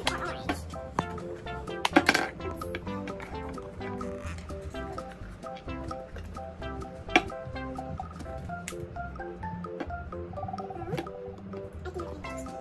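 Background music with a steady melody of short repeated notes. A few sharp knocks of craft items handled on a wooden tabletop cut through it, the loudest about two seconds in and another around seven seconds in.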